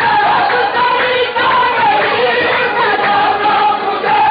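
A qawwali party singing in chorus to harmonium, with a rhythmic beat under the voices.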